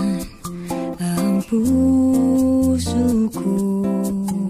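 Recorded pop ballad: a wordless vocal melody held on long notes, gliding between pitches, over acoustic guitar and bass with regular light percussion hits.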